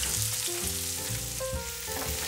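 Freshly added chopped red onions sizzling steadily in hot oil in a frying pan while a spatula stirs them.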